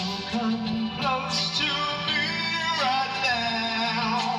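Song with a male lead vocal singing a drawn-out, wavering line over steady instrumental backing; a held note drops in pitch just before three seconds in.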